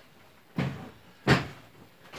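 A 33-litre white plastic bucket with a lid being set down on a table: two knocks about three quarters of a second apart, the second louder.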